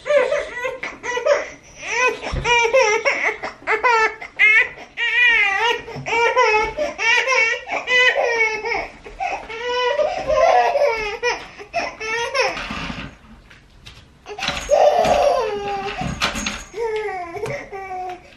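An eight-month-old baby laughing and squealing in repeated high, warbling runs, with a short lull about thirteen seconds in before the laughing picks up again.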